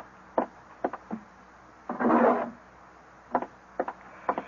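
Radio-drama sound effects of a shopkeeper fetching a tray of coins: a few short knocks and clicks on wood, and a half-second sliding rub about two seconds in as a drawer is pulled open.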